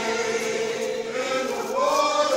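A group of voices singing together in slow, long held notes, moving to a new note near the end.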